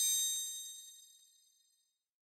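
A bright metallic chime sound effect, struck once at the start with a few quick ticks, ringing high and fading away over about two seconds: a logo sting.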